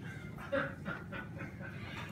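A few faint, short chuckles and snickers from people in the room.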